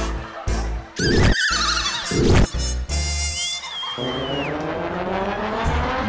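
Background score with sound effects: several sharp hits with wobbling, gliding tones in the first two and a half seconds, then a slowly rising tone through the last two seconds.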